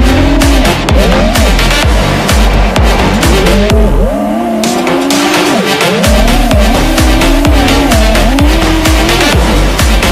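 FPV racing quadcopter's motors whining, the pitch rising and falling quickly with the throttle, under an electronic dance track with a steady beat that drops out briefly near the middle.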